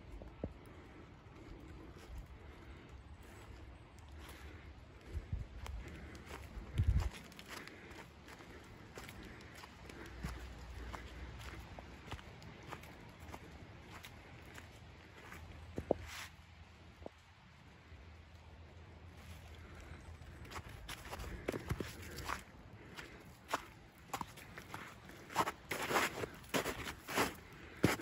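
Footsteps on snow-covered ground: scattered steps at first, then steady walking at about two steps a second near the end.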